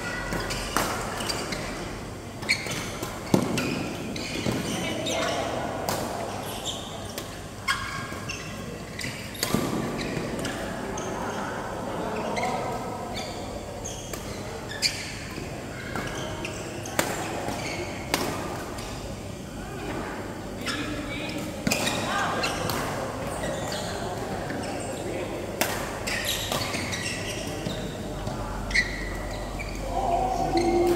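Badminton rackets striking a shuttlecock in rallies: sharp, irregular cracks and shoe thuds on the court, over indistinct voices from the players, all echoing in a large indoor hall.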